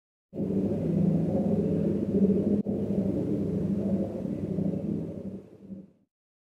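A sine-wave sound installation playing a dense, steady drone of many low sine tones layered together. It starts suddenly, dips out briefly about two and a half seconds in, and fades out near the end.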